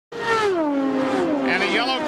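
IndyCar V8 engine passing at speed. Its pitch drops about an octave over the first second, then it runs steadily. A commentator's voice starts over it near the end.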